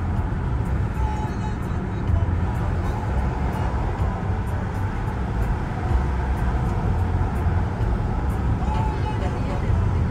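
Steady road noise heard from inside a moving vehicle's cabin: a constant low rumble of tyres and engine at highway speed.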